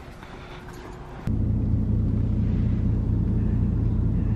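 Steady engine rumble heard from inside a vehicle's cabin. It starts suddenly about a second in, after a quieter stretch.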